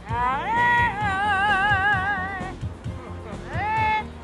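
Singing parrot giving a tune: a high note that slides up and is held with a wavering vibrato for about two seconds, then a second note that slides up near the end.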